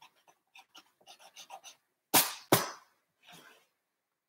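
Pencil drawing faint short strokes on a canvas, then two loud, short breath sounds close to the microphone about two seconds in, half a second apart.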